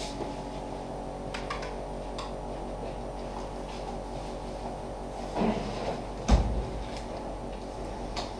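A steady low electrical or machine hum fills the room, with faint clicks and handling noises as protective overshoes and clothing are pulled on, and one sharp knock about six seconds in.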